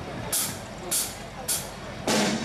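Drum-kit cymbal counting in a song: three evenly spaced, hissing cymbal strikes about two-thirds of a second apart, each fading quickly.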